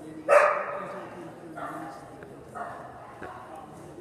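A dog barking loudly once, about a third of a second in, the bark echoing in a large indoor arena, followed by two quieter calls.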